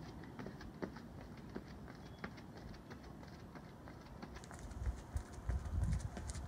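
Sneakers landing and scuffing on a concrete sidewalk in a quick, irregular rhythm of light taps as a person hops and twists through a ladder drill, louder near the end.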